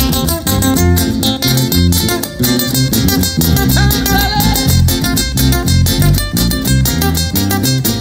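Live tierra caliente band playing through a PA: guitars strummed and plucked over a bouncing bass line, with a steady, even beat.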